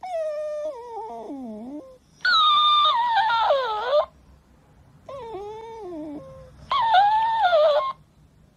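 Dog whining in four long, wavering calls that slide down in pitch, with short gaps between them; the second and fourth calls are louder.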